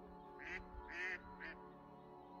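A duck quacking three times about half a second apart, the middle quack the loudest and longest, over soft, steady ambient meditation music.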